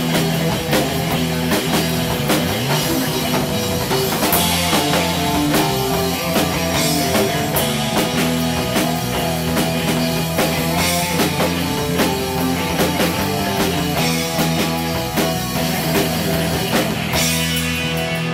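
Live surf-rock band playing loud with no singing: electric guitar over a drum kit.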